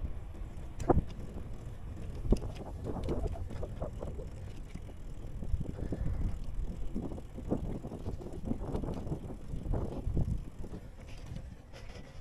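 Bicycle riding along, its tyres rumbling over asphalt and then a tiled paver path, with irregular knocks and rattles from the bike; two sharp knocks stand out about one and two seconds in.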